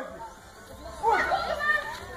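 Children's voices calling out faintly about a second in, weaker than the close talk around them; the first second holds only quiet outdoor background.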